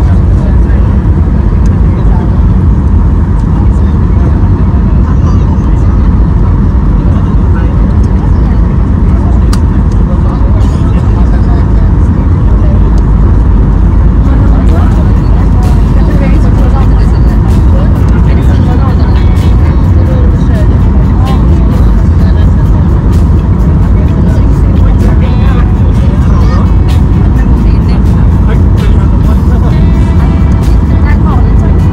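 Loud, steady low rumble inside a Boeing 737-800's cabin at a window seat: its CFM56-7B engines and the airflow over the airframe on approach, with the wing flaps extended.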